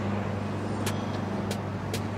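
Steady low background hum with a few faint clicks from plastic-bagged shirts being handled.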